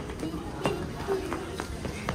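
Footsteps on stone steps and paving: a string of quick, uneven steps as people in sneakers walk down outdoor stairs and a small child runs ahead.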